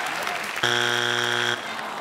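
Audience applause, then a game-show wrong-answer buzzer sounding once, a steady low buzz just under a second long: the answer given is not on the board.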